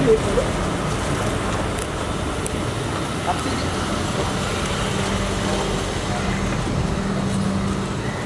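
Street traffic noise with a nearby vehicle engine running, its steady low hum growing stronger about halfway through.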